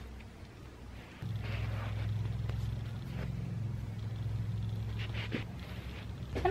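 A low, steady hum starts suddenly about a second in and keeps going, with faint soft rubbing noises over it.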